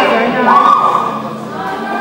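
Several players' voices shouting and calling out over one another in an echoing sports hall, with one loud, drawn-out call about half a second in.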